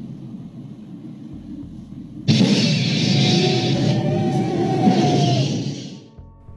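Film sound effect of a flamethrower firing: over a low rumble, a sudden loud rush of fire starts a little over two seconds in and lasts about three seconds before fading, with a faint held tone running through it.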